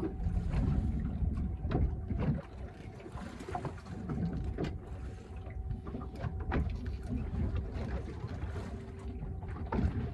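Wind buffeting the microphone and water slapping against a small boat's hull, with scattered clicks and knocks and a faint steady hum underneath.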